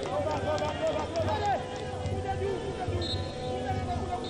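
Stadium crowd and player shouts over a steady background, with a short referee's whistle blast about three seconds in: the start of the half-time whistle.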